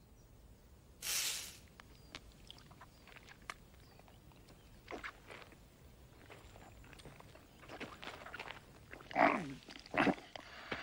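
A man blowing out a short breathy puff about a second in, then faint rustles and clicks, and a short falling grunt near the end.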